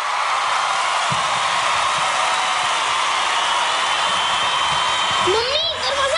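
A loud, steady hissing rush of noise without rhythm; near the end a high-pitched voice starts speaking over it.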